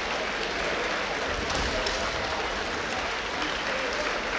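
Spectators applauding steadily in a large hall, with faint distant voices underneath.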